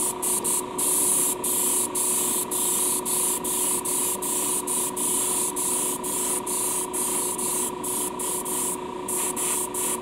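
Airbrush hissing as it sprays paint onto a small diecast car body. The hiss cuts out for an instant every half second or so, over a steady hum.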